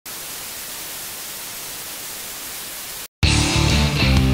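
Steady TV-static hiss for about three seconds that cuts off suddenly; after a brief gap, loud guitar music begins.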